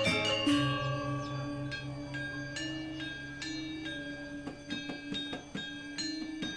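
Balinese gamelan playing: struck metal keys ringing on many pitches over a low gong tone that pulses.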